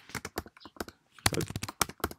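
Typing on a computer keyboard: a run of irregular keystroke clicks, with a quicker, louder burst of keystrokes a little past the middle.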